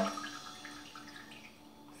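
Whey trickling and dripping from the strainer basket of a tub of feta cheese back into the tub, faint.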